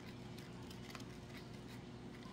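A few faint snips of scissors cutting through a sheet of glitter craft foam.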